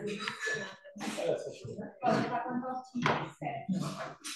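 Indistinct talking by several people in a room, with light handling of kitchen utensils.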